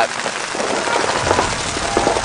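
Many paintball markers firing rapidly at once, with the shots running together into a steady patter of pops.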